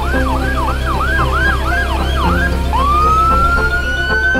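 Cartoon ambulance siren sound effect: a fast wail sweeping up and down about three times a second, then, a little under three seconds in, switching to one long tone that rises and holds. A steady low rumble runs underneath.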